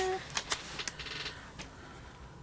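Stickers and paper being handled and pressed onto a planner page: a few sharp little clicks and a short papery rustle about a second in.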